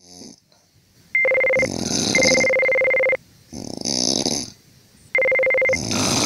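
Exaggerated snoring, three long snores in all: the first and last buzz with a steady high whine running through them, and the one between is rougher and breathier.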